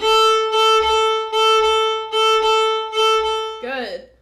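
Fiddle bowing the open A string over and over in a swung long-short rhythm, a single steady note with each stroke clearly separated; it stops a little before the end, and a woman's voice follows.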